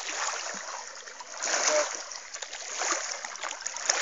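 Water splashing and swishing as a hand landing net is swept through shallow river water around a wading man's legs, in several swells, the loudest about a second and a half in.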